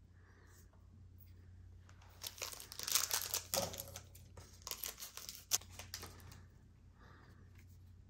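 A foil Pokémon TCG booster pack wrapper being torn open and crinkled by hand, a run of crackling from about two seconds in until about six seconds in.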